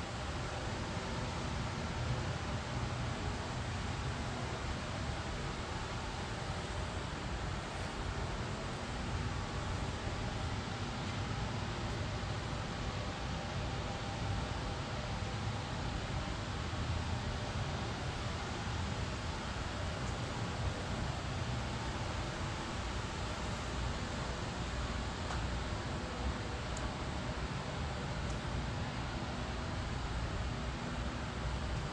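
Steady rushing air noise with a low rumble underneath, unchanging throughout, as from a fan running.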